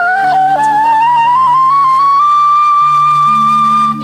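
A solo flute plays a melody that climbs in small steps and settles on a long held high note through the second half, over soft sustained low chords from the orchestra.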